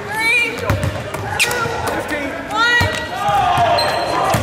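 A basketball bouncing on a hardwood court a few times in short sharp knocks, with voices in the background.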